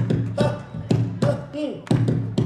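Live Malian music with a percussive strike about twice a second and short tones that bend downward in pitch between the strikes.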